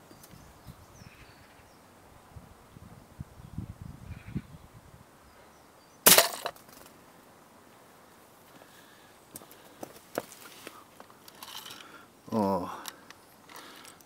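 A single sharp crack of a spring air rifle shot and its pellet striking a toy model bus, about six seconds in; the pellet goes in through the windscreen and out the bottom. Before it there is light rustling.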